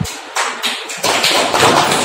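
A few sharp taps or knocks, about four in the first second, followed by a brief hiss.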